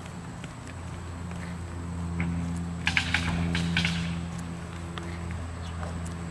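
A steady low machine hum with several even tones, swelling a little in the middle. A few light taps, likely a toddler's footsteps on asphalt, come about three to four seconds in.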